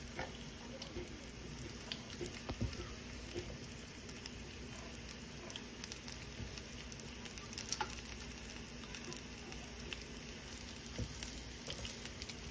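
Thin-shaved ribeye coated in cornstarch frying in hot oil in a nonstick skillet: a steady sizzling hiss with scattered pops and crackles.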